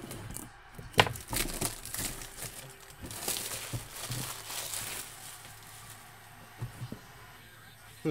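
Plastic wrap crinkling and tearing as a sealed cardboard box is opened by hand, with a sharp snap about a second in. Quieter handling clicks follow in the second half.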